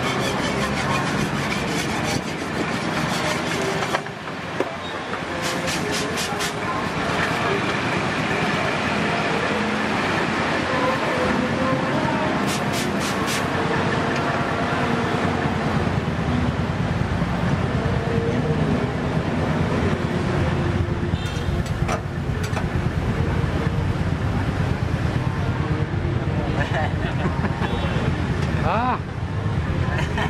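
Busy street-market ambience: steady background chatter of voices and road traffic, with two short runs of quick clicks.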